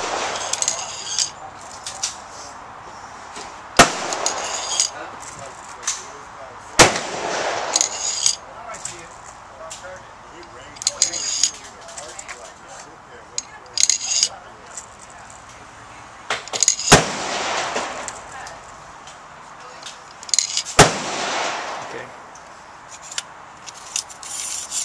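Gunshots on a shooting range: four sharp reports, each with a short echo, spaced several seconds apart. Lighter, high-pitched metallic clinks come between them.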